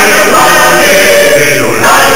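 Music with a choir of voices singing, loud and steady.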